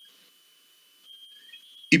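A faint, steady high-pitched tone that drops out for about half a second in the middle and then returns.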